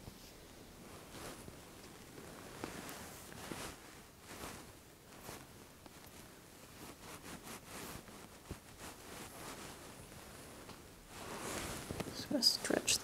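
Hands pressing and sliding over a person's bare back during a manual back adjustment, giving a string of faint skin-rubbing and fabric-rustling sounds.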